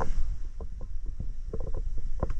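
Low wind rumble on the microphone with irregular small knocks and clicks scattered through it.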